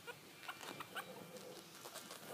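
Four-week-old Chihuahua puppies giving a few faint, short high squeaks and whimpers.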